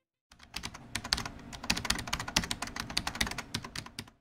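Fast, irregular typing on a computer keyboard: a dense run of key clicks that starts a moment in and stops right at the end.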